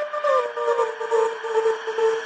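A trance music breakdown with no drums or bass: a synth lead slides down in pitch over the first second, then holds one long note.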